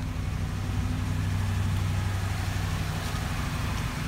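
A 2017 Ford F-250 pickup's engine idling steadily, a low even hum, with an even hiss of outdoor noise over it.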